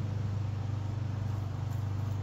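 Steady low hum of an outdoor air-conditioning condenser unit running.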